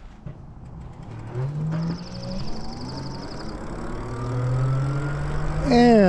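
Electric bike motor whining as the bike speeds up, its pitch climbing steadily. A fast, high buzz runs for about a second and a half from about two seconds in.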